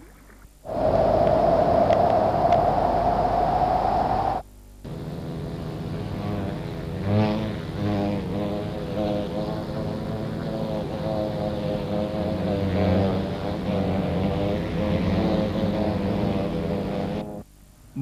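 Honeybees buzzing: a steady hum rising slightly in pitch for about four seconds, then, after a short break, a longer stretch of layered humming whose pitch shifts every so often.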